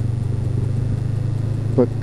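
2013 Honda CB500X's parallel-twin engine running steadily under way through its aftermarket Staintune exhaust, a steady low hum.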